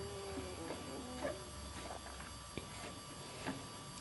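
Quiet room with a steady low electrical hum and a few faint clicks of a plastic Lego minifigure being turned by hand on its stand.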